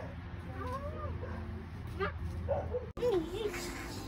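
An animal whining in short calls that rise and fall, over a steady low hum. A louder call comes after a cut about three seconds in.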